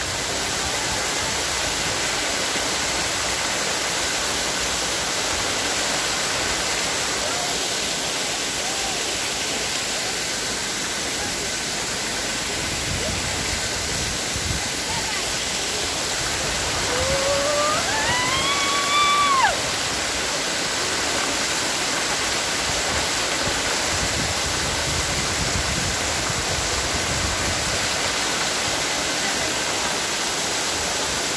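Steady rush of a waterfall cascading over rock. About two-thirds of the way through, a voice calls out once with a rising pitch.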